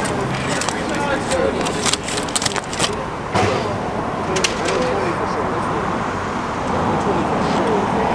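Aluminium foil crinkling in sharp clicks and rustles as a foil-wrapped serving of food is opened, mostly in the first three seconds, over a steady bed of background voices and street noise.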